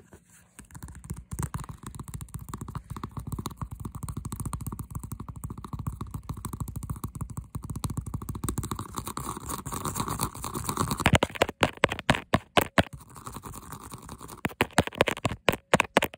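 Fingernails scratching fast over a stitched leather-look handbag panel close to the microphone, a dense rapid scraping; from about 11 s it turns to loud separate taps, a pause, then another quick run of taps near the end.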